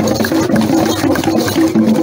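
Traditional dance music: a fast, repeating figure of short, low pitched notes over shakers and rattling percussion.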